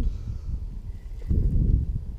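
Wind buffeting the camera microphone as an uneven low rumble, with a stronger gust about a second and a half in.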